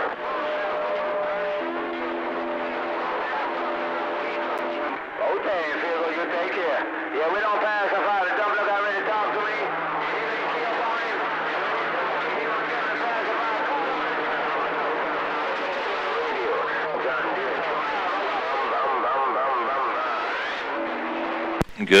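CB radio receiver on channel 6 putting out a crowded band: distant stations' voices jumbled over each other under steady static hiss, with several steady whistling tones from overlapping carriers. The signal meter is lit near full scale, so the channel is full of strong signals.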